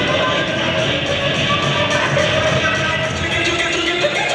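Dance music played loudly over an arena sound system for a cheerleading routine.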